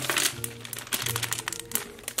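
Clear plastic parts bag crinkling as it is handled, over light background music with steady held notes.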